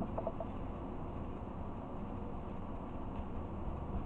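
Faint rustling and a few light clicks, the first in the opening half-second, from hands rummaging through crinkle-paper shred inside a gift box, over a low steady room hum.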